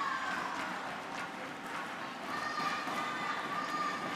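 Indoor badminton hall ambience between rallies: a steady crowd murmur with faint voices. About halfway, a steady high tone comes in.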